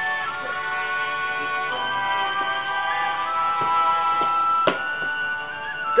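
Music playing, with long held notes that shift in pitch every second or two; a short click sounds about three-quarters of the way through.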